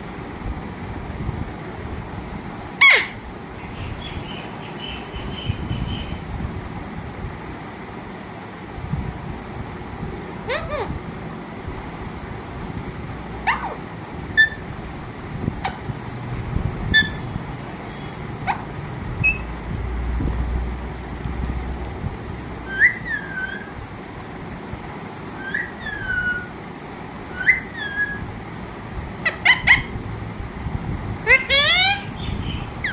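Caged Alexandrine parakeet giving short, sharp calls every few seconds, then a quicker run of falling chirps in the last several seconds, over steady background noise.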